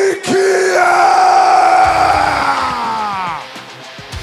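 Ring announcer's long, drawn-out shout into a handheld microphone, introducing a fighter: one held call of about three seconds whose pitch falls away at the end. Low thumps of music come in under it during the second half.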